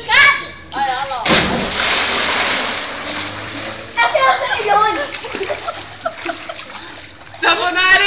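A person jumping from a high wall into a swimming pool: one loud splash about a second and a half in, fading into water churning as they swim. Excited young voices shout before and after it.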